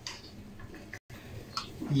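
Faint scattered clicks and light taps from a small metal tea strainer being handled over a bowl of cut potatoes while lemon juice is squeezed through it. The sound cuts out for a moment about halfway through.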